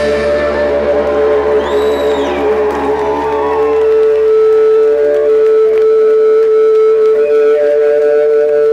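Live rock band letting its last chord ring out as one long, loud, steady droning note from the amplified guitars. A brief high whistle rises and falls about two seconds in.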